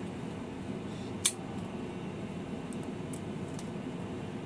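Steady low hum of an airliner's cabin as the jet taxis after landing. A single sharp click cuts through about a second in, followed by a few faint ticks.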